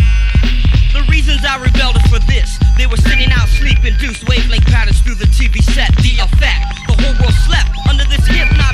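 Hip hop track with a heavy bass-drum beat and rapping over it.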